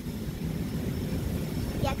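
Low, steady rumble of distant engines outdoors.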